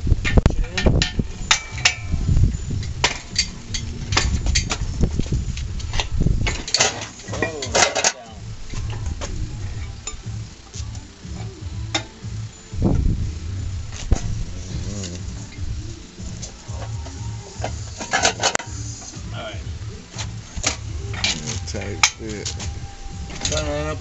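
Scattered metallic clinks and knocks from the hoist chain and the hanging Chevrolet 350 small-block as the engine is worked down into the engine bay, over a low rumble.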